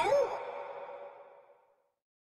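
The rap song's last vocal phrase trails off in a reverb echo that fades out about a second in, leaving silence as the track ends.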